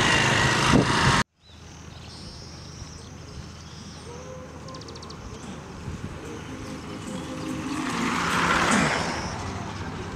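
Roadside traffic, mostly motorcycle engines. A louder rush of road noise cuts off abruptly just over a second in. After that the engines are quieter, and one vehicle draws near and passes with a swell about eight to nine seconds in, then fades.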